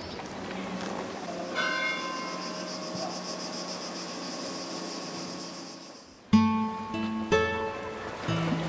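Church bell struck once, its tones ringing on and slowly fading over about four seconds. Near the end, two louder struck notes come in about a second apart.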